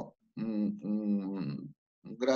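A man speaking Spanish over a video call, quieter than the surrounding speech. The call audio cuts to dead silence just before and just after.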